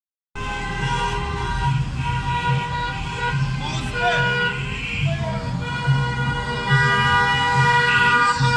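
Several car horns honking in long, overlapping blasts from a wedding motorcade of cars driving past, over engine noise.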